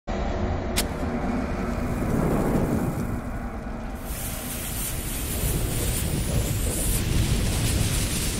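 Sound effects of an animated logo intro: a steady low rumble with a sharp click about a second in, joined about four seconds in by a hissing rush of flames.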